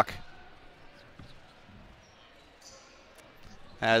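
Quiet gymnasium ambience during a stoppage in play, with a few faint knocks about a second in.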